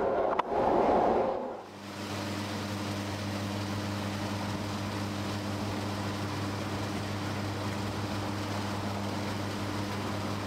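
Noise of a moving train carriage for the first second or two, cutting off suddenly, then a steady low mechanical hum that keeps on unchanged.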